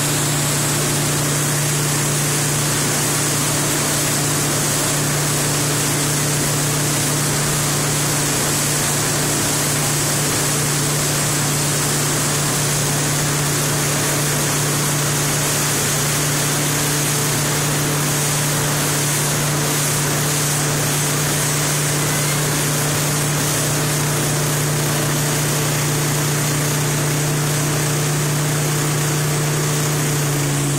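Towing motorboat's engine running steadily at speed, one constant low tone under a loud rush of wake spray and wind.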